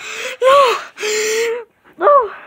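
A person's breathy, high-pitched gasping cries, three in quick succession: the middle one rises and falls in pitch, the last is held steady.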